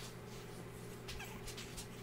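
A French bulldog puppy gives a faint, short whine about a second in while it mouths and chews a knit sleeve, with soft scattered clicks and rustles of fabric. A steady low hum runs underneath.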